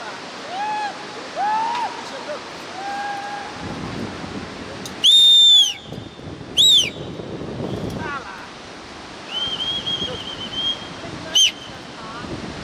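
Shrill whistles that rise then fall in pitch: two very loud ones about five and six and a half seconds in, a wavering one a little after nine seconds, and a short loud one near the end. A few shorter, lower calls come in the first two seconds. All of it sits over the steady rush of a fast-flowing river.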